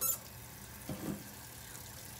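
Kitchen tap water running steadily into a large glass jar, filling it with water for cold brew coffee.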